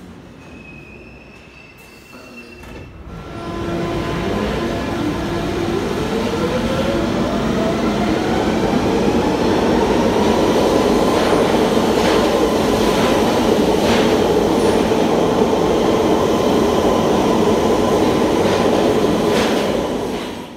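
London Underground Bakerloo line 1972 Stock tube train pulling away from a platform. After a few quieter seconds the train noise jumps up, and the motor whine rises steadily in pitch as it speeds up, over a loud wheel-and-rail rumble with a few sharp clacks.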